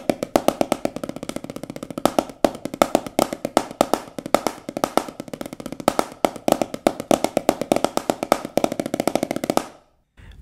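Wooden drumsticks playing fast, even strokes with recurring accents on a Reflexx rubber practice pad: a dense stream of dry taps with a short break about two and a half seconds in. The strokes stop just before the end.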